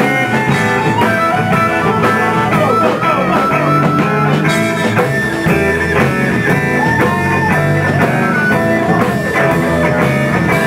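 Live blues-rock jam: harmonica playing bent, sliding notes over electric guitar and a steady beat.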